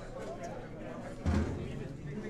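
Indistinct background chatter of voices, with a single sudden dull thump about a second and a quarter in.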